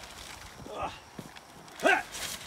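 A man's short grunts of effort as he heaves a heavy garbage bag, one about a second in and another near the end, with a faint click between them.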